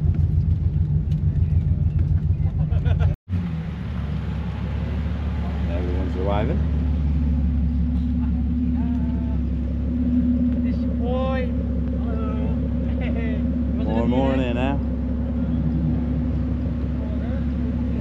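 Low road and engine noise of a car on the move, with a fast flutter like wind buffeting on the microphone. Just after three seconds it cuts off sharply, and a steady low drone follows with voices talking now and then.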